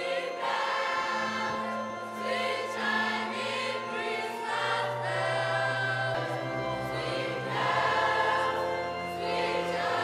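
A school choir, mostly girls' voices, singing together in parts over steady low held notes.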